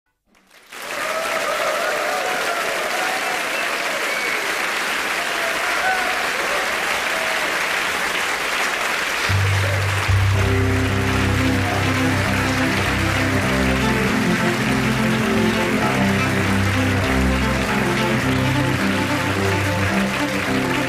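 Audience applauding; about nine seconds in, a cello begins playing long, low bowed notes under the continuing applause.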